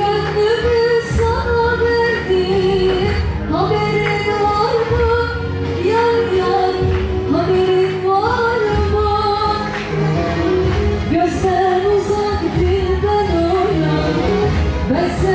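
A woman singing into a handheld microphone over a backing track with a steady beat. Her melody slides and bends between notes.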